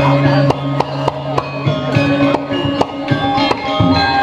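Balinese gamelan playing: ringing bronze metallophone tones held over sharp drum and cymbal strokes that come about three times a second.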